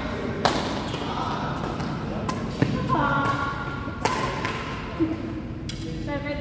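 Badminton rackets hitting a shuttlecock in a doubles rally: about five sharp strikes, one to two seconds apart, with voices in the background.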